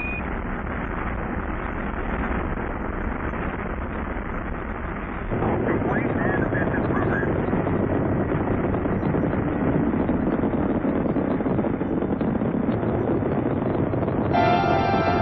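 Saturn V rocket launch noise: the first-stage engines' exhaust as a steady, dense rumble that steps up louder about five seconds in.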